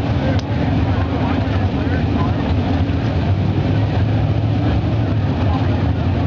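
Pro Stock drag cars' big naturally aspirated V8 engines running at the starting line, a loud, steady, even drone with no revving or launch.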